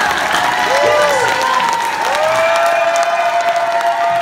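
Audience applauding and cheering. Whoops rise and fall over the clapping, and one is held for a couple of seconds from about halfway through.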